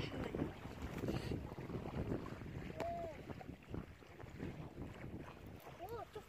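Wind buffeting the microphone, an uneven, gusty rumble.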